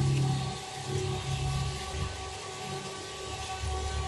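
Steady low background hum with a few faint steady tones over it, dropping away for a while in the middle and returning near the end.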